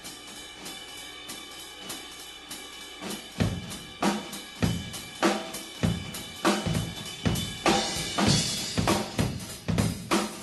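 Solo drum kit playing a swing ride-cymbal pattern, joined about three seconds in by strong bass drum and snare hits that lay a funk beat under the swing feel, making a hip-hop groove. A cymbal wash swells near the end.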